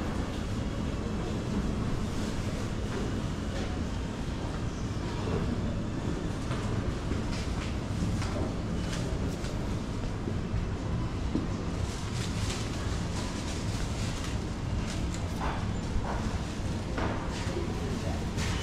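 Supermarket background noise: a steady low rumble and hum, as from refrigerated displays and ventilation, with scattered clicks and knocks, more of them after about twelve seconds.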